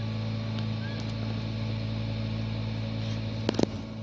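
Steady low motor hum, like a small fan running, with two sharp clicks close together just before the end.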